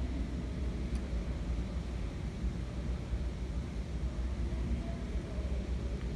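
Steady low rumbling background noise, even in level, with no distinct events.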